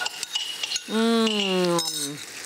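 A metal spoon clinks and scrapes against a ceramic bowl as cream sauce is scraped out of it into a pan of mushrooms. About a second in, a person lets out a long drawn-out vocal sound, held for about a second and falling slightly in pitch.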